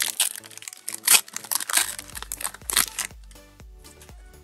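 Foil wrapper of a Pokémon booster pack crinkling and tearing as it is opened by hand, a run of loud crackles during the first three seconds, the loudest about a second in.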